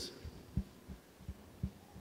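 A few faint, soft, low thumps on a close microphone as a cloth and hand brush against it while a face is wiped.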